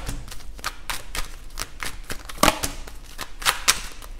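Tarot cards being shuffled by hand: an irregular run of sharp card snaps and rustles, loudest about two and a half seconds in and again shortly before the end.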